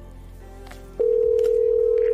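Telephone ringing as an electronic tone: one loud, steady, unbroken beep that starts about a second in, over faint background music.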